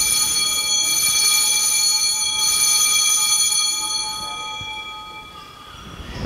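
Altar bell ringing with a set of clear, steady high tones that slowly die away about five seconds in. It marks the elevation of the chalice at the consecration of the Mass.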